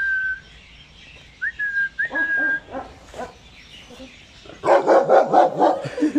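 A person whistles a steady, high note, twice in short stretches. Near the end, dogs break into a quick, loud burst of barking lasting about a second.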